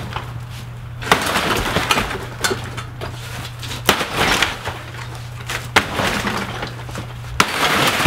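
Camper interior demolition: four hard blows, each followed by the cracking and splintering of thin wood paneling and framing being smashed and torn loose, with a steady low hum underneath.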